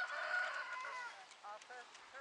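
A rooster crowing once, a held call of about a second that drops in pitch at the end, followed by fainter short calls.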